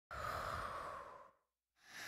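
A person's breathy exhalations, like sighs: one lasting about a second, then a second one starting near the end.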